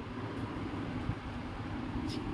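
A steady low background rumble, with no speech.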